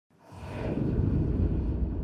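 A deep rushing whoosh sound effect swells up from silence within the first half second and holds, rumbling low, its upper hiss thinning toward the end.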